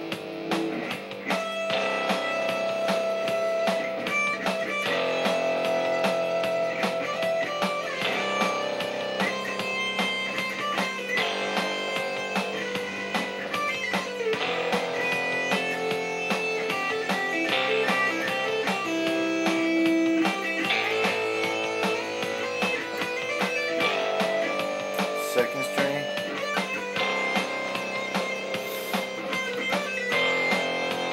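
Electric guitar improvising single-note melodic lines in C major, kept on one string at a time with some sliding between notes, over a backing track of strummed chords.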